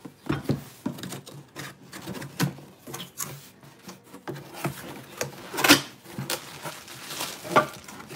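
Cardboard box being opened and rummaged through, with rubbing and rustling and scattered light knocks as the boxed glass dome and tray are handled. The sharpest knock comes a little before six seconds in.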